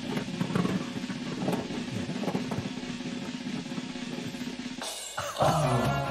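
A snare drum roll plays while a ball is drawn from the game-show urn. It breaks off about five seconds in and is followed by a descending musical sting, the signal that the black ball has been drawn.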